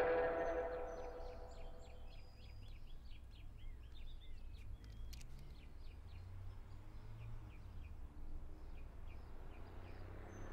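The song's last chord rings out and fades over the first second or two. It leaves faint outdoor ambience: small birds chirping over a low, steady rumble.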